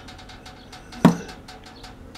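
A man's short vocal sound about a second in, like a brief grunt or throat noise, over faint scattered clicks of handling.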